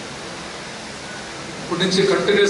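A steady hiss of background noise in a pause in a man's speech, with his voice starting again near the end.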